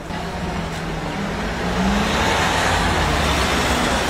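Street traffic: a car's engine and tyre noise, growing louder about halfway through as a vehicle comes past close by.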